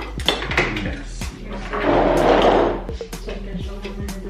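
Plates and metal serving tongs clinking and clattering while food is served, over background music; about two seconds in, a louder scraping noise lasts most of a second.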